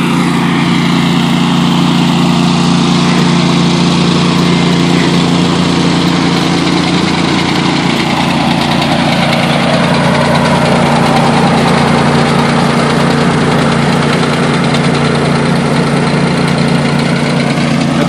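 Toro ProCore 648 walk-behind core aerator running steadily, its engine driving the hollow tines that punch cores out of the putting green.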